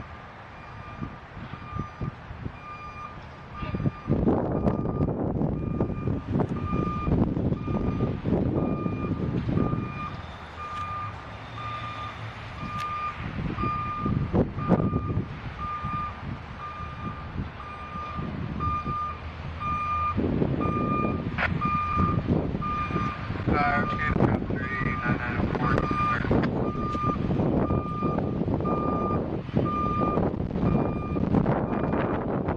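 A hi-rail truck's reversing alarm beeping steadily at a single pitch, over the truck's engine and gusts of wind buffeting the microphone.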